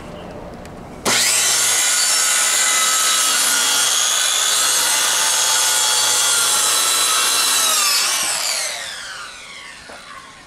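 A Ryobi circular saw starts up about a second in and rips through OSB along a wooden fence, with a loud, steady motor whine while it cuts. Near the end it is switched off and the whine falls in pitch as the blade spins down.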